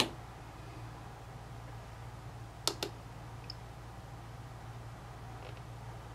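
Small plastic push-buttons on a handheld digital oscilloscope clicking twice, once at the start and again about two and a half seconds later, each as a quick double click, over a steady low hum.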